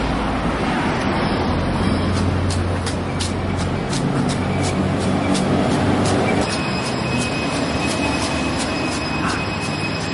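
Street traffic, with a vehicle's engine hum rising and fading in the middle, under wind rushing on the microphone and regular knocks of running footfalls, two or three a second, from a camera carried at a run.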